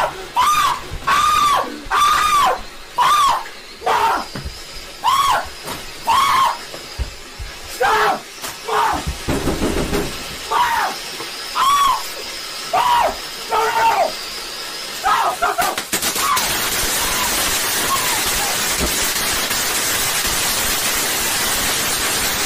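A man screaming over and over in short, high yells beside an indoor firework fountain that sprays sparks. From about sixteen seconds in the yelling stops and the fountain's loud, steady hiss is left alone.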